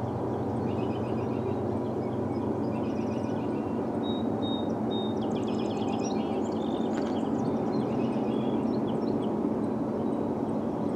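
Distant, steady rumble of the diesel locomotives leading an approaching freight train, slowly growing louder. Songbirds chirp and trill over it.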